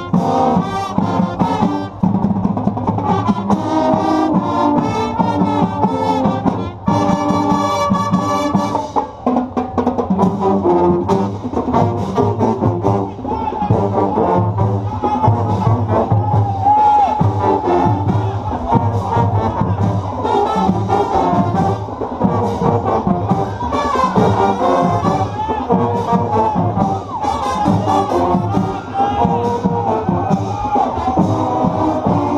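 School marching band playing: trumpets, trombones and sousaphones together over a steady drum beat, with a loud, bright held chord about seven to nine seconds in.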